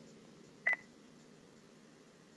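A single short electronic beep about two-thirds of a second in, over a faint steady room hiss.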